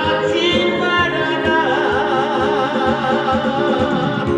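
A man singing into a handheld microphone over accompaniment music with a steady beat, holding long notes with vibrato.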